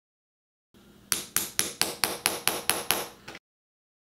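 Hammer striking a metal eyelet setter on a concrete floor, nine quick blows at about four to five a second, each with a bright metallic ring: setting and crimping a metal eyelet through a leather bag.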